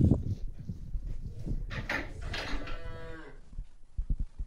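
A black-and-white dairy cow mooing once, one call of about a second and a half that cuts off about three seconds in. A few low knocks come just before it near the start.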